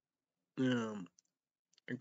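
A man's short voiced sigh, falling in pitch, about half a second in, followed by a couple of faint mouth clicks before he starts talking again near the end.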